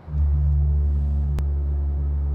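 A deep sound-design hit for the soundtrack: a low tone with a few overtones starts suddenly, like a gong or boom, and holds steady as a drone. There is one short click about a second and a half in.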